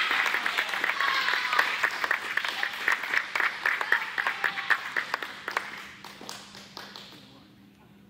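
A small audience clapping, with some voices cheering at first, in response to a board break. The applause thins out and dies away near the end.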